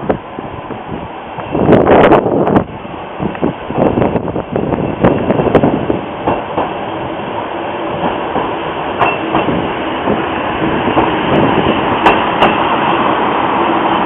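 HSB narrow-gauge diesel railcar 187 017 approaching and passing close by, its engine running steadily and growing louder as it nears, with the wheels clicking over rail joints. A brief loud burst of noise about two seconds in.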